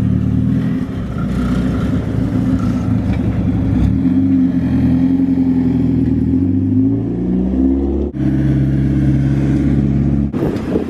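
Mazda Miata's engine running as the car drives across a parking lot, its pitch falling and rising as it slows and speeds up, with a sudden break about eight seconds in and a steady note after it.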